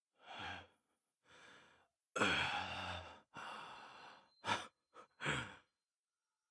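A badly wounded man's laboured breathing: a series of heavy, voiced sighs and gasps, the longest and loudest about two seconds in, then short, quick gasps near the end.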